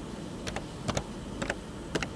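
Four light keystrokes on a computer keyboard, about half a second apart, typing a short number.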